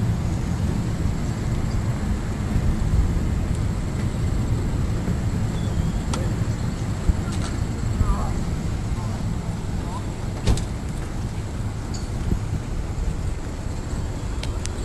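Outdoor ambience picked up by a phone's microphone: a steady, uneven low rumble of wind on the mic and road traffic, with a few sharp clicks and faint brief chirping about eight seconds in.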